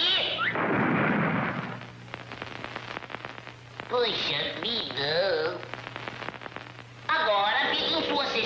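Cartoon soundtrack sound effects: a noisy crash lasting about a second near the start, then quieter scattered clicks, then wordless wavering vocal sounds about four seconds in, with music coming in about a second before the end.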